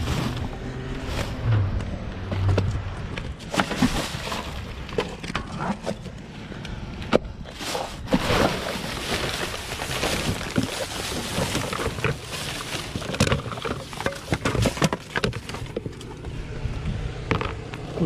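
Plastic bags, wrapping and paper rustling and crinkling as gloved hands rummage through trash in a dumpster, with scattered knocks and clicks of objects being moved.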